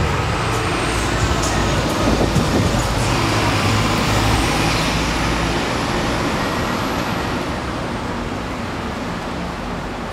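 Road traffic noise: a heavy vehicle's low rumble swells in the first half and eases off toward the end, over a steady wash of traffic with a faint high whine.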